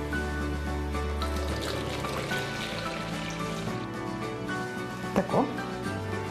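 Background music over distilled water being poured from a large plastic jug into a container to be weighed, with a brief knock about five seconds in.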